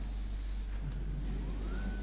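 Steady low hum, then, about one and a half seconds in, an electric drive motor's whine rising in pitch and then holding steady as the Flatmount plate mounter's motorized trestle with its lowered pressure roller starts to roll.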